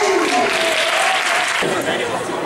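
Spectators clapping in a hall, with voices calling out over the applause in the first second.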